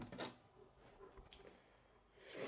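Near silence with a few faint, sharp clicks of K'nex plastic pieces being handled, about a second in.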